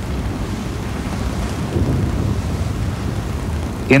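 Steady low rumbling rush of wind and sea, a seagoing sound effect under a wartime U-boat documentary, swelling slightly about halfway through.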